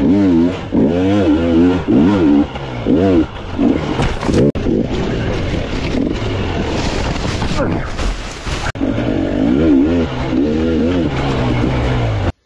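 Enduro dirt bike engine revving up and down with the throttle on a rough trail, picked up by a helmet camera, with a noisy rush of wind and rattle through the middle and a couple of sharp knocks.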